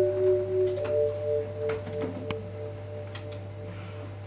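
Quiet passage of long held notes from a saxophone, violin and vibraphone trio, fading away. From about a second in, one note pulses about three times a second, like a vibraphone's motor tremolo. A steady low hum runs underneath.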